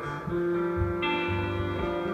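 Amplified electric cigar box guitar playing a blues phrase of held, ringing notes over a lower repeating line.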